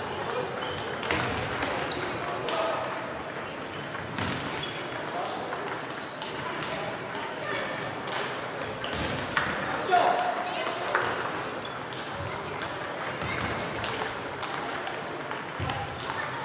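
Table tennis balls clicking off bats and tables at several tables at once, irregular sharp ticks with one louder hit about ten seconds in, over a murmur of voices and short high-pitched squeaks.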